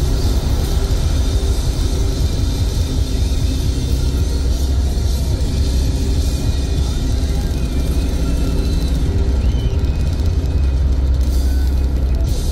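Steady low rumble of a car driving at highway speed, heard from inside the cabin, with music playing over it.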